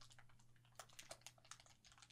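Near silence with faint, scattered crackles and ticks from a crumpled plastic bag settling on its own after being set down on a desk.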